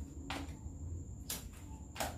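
Playing cards being laid down on a tabletop: two short soft slaps about a second apart, over a low background rumble.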